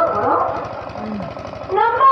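A stage actor's voice through a microphone and loudspeakers, speaking at first, dropping into a short lull, then breaking into a raised, drawn-out call near the end, over a fast, steady low rattle.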